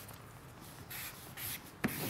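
Broad-tipped marker being dragged across cardboard in short scratchy strokes while writing a graffiti tag, with a sharp click near the end.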